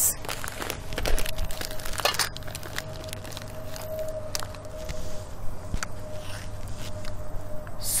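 Scattered clicks, taps and rustles of spice containers and utensils being handled on a table. A faint steady tone runs underneath.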